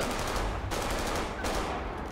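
Rapid automatic gunfire from a TV drama's soundtrack: a dense run of shots that thins out about a second and a half in.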